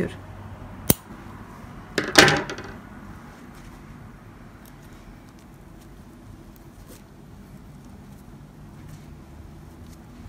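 A single sharp scissor snip through the jumbo crochet cord about a second in, then a brief louder burst of sound about two seconds in. After that only faint handling of the cord, crochet hook and crocheted bag is heard.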